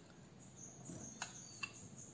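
Two faint, short clicks in the second half as minced garlic is added to butter in a glass bowl.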